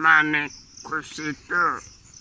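A boy's voice making short wordless vocal sounds in three bursts, over a steady high chirring of insects.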